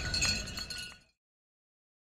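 Light glassy clinks and chimes from an animated-title sound effect, fading quickly and cutting to silence about a second in.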